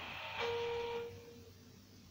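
A short hiss-like rushing noise, then a steady, flat pitched tone of about a second that stops about halfway through.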